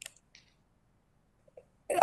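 A man's speech breaks off into a pause of near quiet, with a faint click and a couple of soft mouth noises, and his speech resumes near the end.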